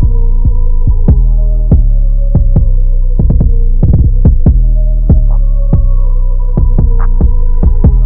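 Instrumental Chicago drill beat: a heavy, steady 808 bass under sharp, irregular drum hits and a held synth note. The highs stay mostly filtered out in this stretch.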